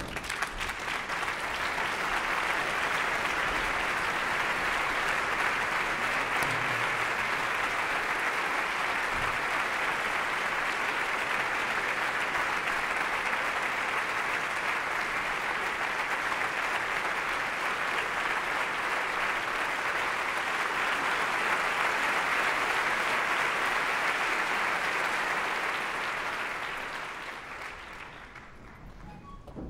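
Opera-house audience applauding steadily, greeting the conductor at the podium; the applause starts suddenly and dies away near the end.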